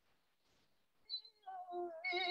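Near silence for about the first second, then a man's solo singing voice comes back in, heard over a Zoom call: a brief high note, then a soft held note that wavers slightly.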